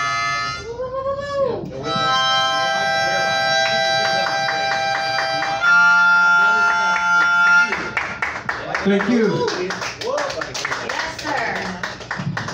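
Harmonica played into a vocal microphone: held chords, a passage pulsed in a quick rhythm, then one long held note, stopping about eight seconds in. After that, a man's voice.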